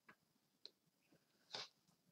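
Near silence: room tone with a few faint short clicks, the loudest a brief soft noise about one and a half seconds in.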